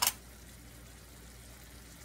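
Salmon fillets simmering in a butter, garlic and lemon sauce in a frying pan over a gas flame: a low, steady sizzle that cuts off suddenly at the end.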